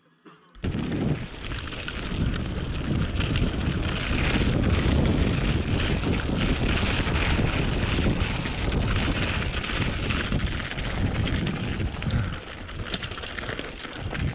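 Mountain bike descending a dirt and gravel trail, heard from an action camera riding along: heavy wind buffeting on the microphone over the crunch of the tyres and the rattle of the bike. It starts abruptly about half a second in.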